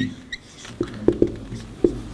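Dry-erase marker squeaking and tapping on a whiteboard as handwritten Arabic letters are drawn: one short high squeak about a third of a second in, then several short ticks of the tip on the board.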